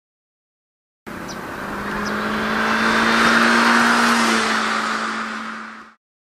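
Mazda Roadster (ND) with a Rowen stainless rear muffler driving past. It grows louder to a peak about two and a half seconds in, then fades, holding a steady engine note that drops slightly in pitch as it passes. The sound cuts off just before the end.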